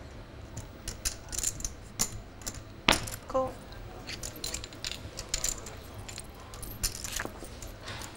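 Poker chips clicking against each other in irregular runs of sharp clicks as a player handles his stack and puts chips in to call a bet.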